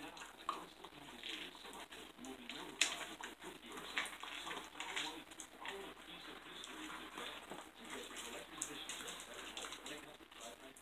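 Miniature Pinscher puppy eating dry kibble off a tile floor: faint, irregular crunches and small clicks as it snaps up and chews piece after piece.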